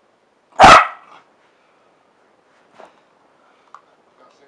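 A Parson Russell Terrier puppy gives a single loud play bark about half a second in, at a toy held out to it. Two faint short sounds follow later.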